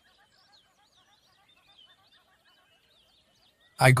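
Faint birdsong: many small chirps in a quiet background bed, with a voice starting to speak near the end.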